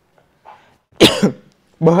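A man coughs once, a short sharp cough about a second in.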